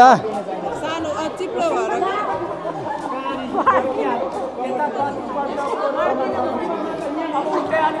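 Several people talking over one another in overlapping chatter, with no other distinct sound standing out.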